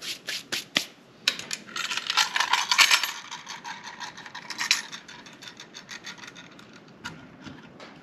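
Wooden sand-casting flask being handled: a few sharp taps, then a stretch of rubbing and scraping as the top half (cope) is brought over the bottom half, followed by lighter scattered clicks and knocks of wood and its brass fittings.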